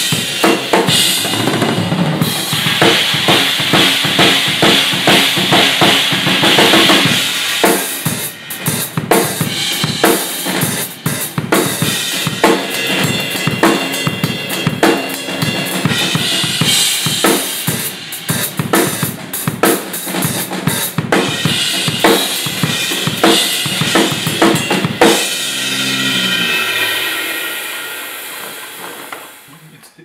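Acoustic drum kit played hard and fast: a dense run of kick, snare and cymbal hits. About 25 seconds in the playing stops, and the kit and cymbals ring on and fade out.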